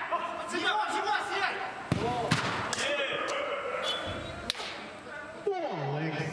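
Several sharp knocks of a football being struck, four of them between about two and five seconds in, the second the loudest, under men's shouting voices.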